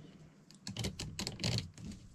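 A quick run of small clicks and rattles, mostly in the second half, from hands handling a cable end and its small metal hardware while wiring a battery management board.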